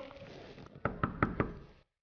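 Four quick knocks on an apartment entry door, a little under a second in.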